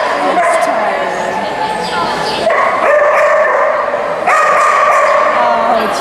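Dogs barking and yipping, the calls echoing and running together in a large indoor arena.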